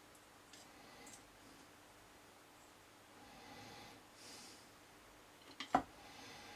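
Small clicks of pliers working a small part, with soft breathing through the nose. One sharp click near the end.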